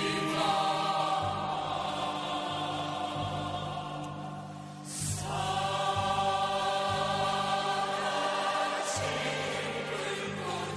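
Musical-theatre chorus singing long held chords in Korean. The sound thins out just before midway, then a new chord comes in.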